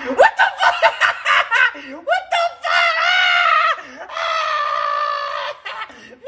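A man laughing in quick bursts for about two seconds, then letting out two long, high, held cries, the second starting about four seconds in.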